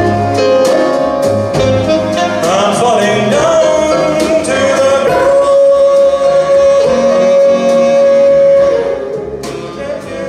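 Live band of violins and accordion playing a slow song, with a male voice singing a wordless, winding melody and then holding one long note for several seconds; the music turns quieter near the end.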